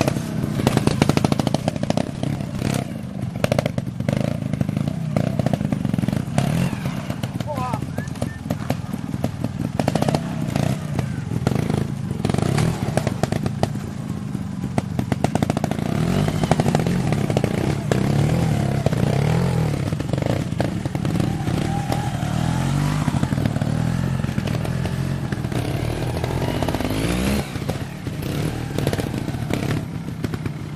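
Trial motorcycle engine running, its pitch rising and falling with the throttle, with people talking in the background.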